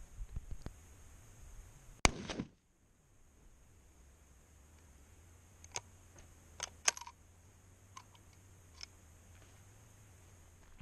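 A single sharp knock about two seconds in. Later, a handful of short light clicks come between about six and nine seconds in as a 1916 Lee Enfield .303 rifle is handled.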